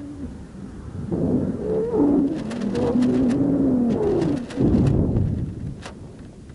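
Creaking and squeaking from a weather-balloon payload at high altitude, in groaning tones that glide up and down, with a run of sharp ticks from about two seconds in.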